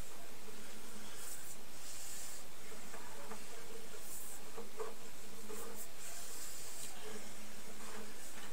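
Steady hiss with a faint low hum, broken by a few short bursts of higher hissing.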